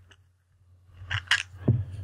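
Plastic clicks and scrapes of the GoPro-style mount pieces being pulled off the SJCAM SJ4000's clear plastic waterproof case, two quick sharp clicks a little after a second in.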